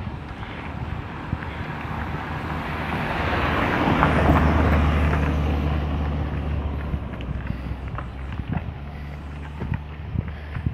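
A car comes up from behind and passes close by, its engine and tyres loudest about four seconds in, then fading as it drives away up the road.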